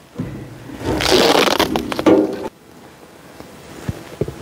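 Hive roof being lifted off and the foil bubble-insulation sheet under it peeled back: a burst of scraping and crinkling about a second in, lasting about a second and a half, then a light knock near the end.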